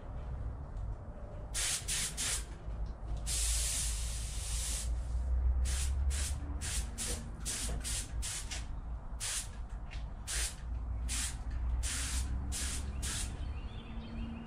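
Compressed-air paint spray gun hissing in about two dozen short trigger bursts, with one longer pass of about a second and a half a few seconds in, as small engine parts are painted. A steady low rumble sits underneath.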